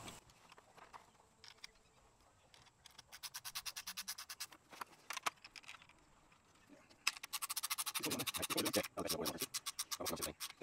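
Awning roller end hardware clicking in quick, even runs, like a ratchet, as the arm is fitted onto it, in two bursts about three seconds apart.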